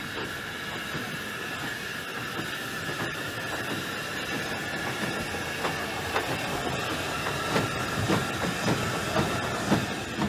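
Steam tank locomotive No. 3 Twizell (built 1891 by Robert Stephenson & Co.) with a steady hiss of steam. Irregular metallic clanks and knocks grow more frequent through the second half.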